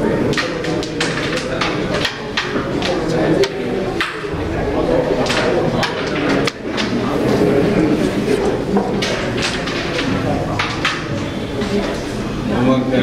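Background voices talking, with scattered short, sharp clicks throughout.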